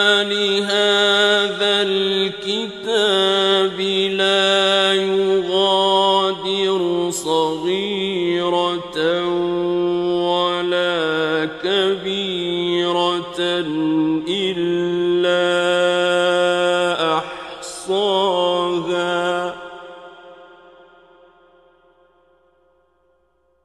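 A solo man's voice chanting Quran recitation in the ornamented mujawwad style, with long held notes that wind up and down in pitch. About 19.5 seconds in the voice stops and the sound dies away gradually.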